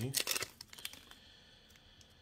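Foil booster-pack wrapper crinkling and trading cards being handled as they are drawn out of the pack, a few short rustles and clicks in the first half second, then faint handling.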